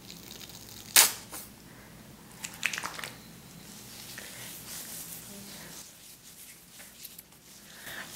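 Plastic squeeze bottle of hair styling cream handled and squeezed out, with one sharp snap about a second in and a few smaller clicks a little later, then faint squishing as the cream is worked through wet hair.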